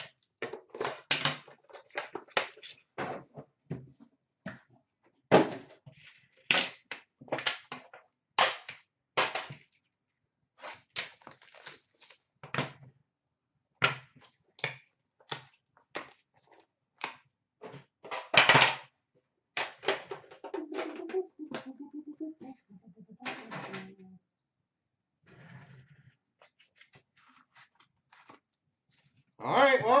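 Hockey card packs and a metal box tin being handled on a glass counter: a long run of irregular taps, clicks and knocks, with a short lull near the end.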